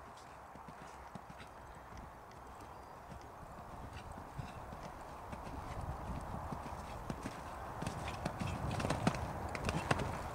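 Hoofbeats of a horse cantering on a sand arena surface, growing louder toward the end as the horse comes closer.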